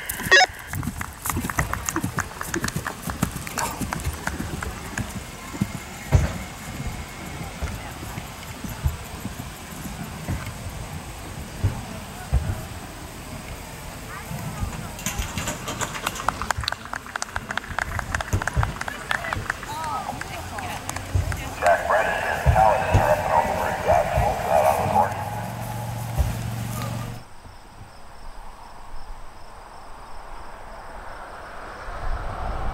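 Hoofbeats of a horse cantering on grass, coming as irregular footfalls, with indistinct voices in the background and a louder stretch of talk shortly before the end.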